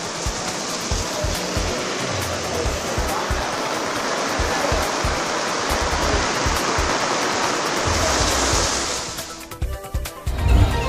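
Heavy rain pouring down in a steady hiss, fading out near the end, with background music underneath.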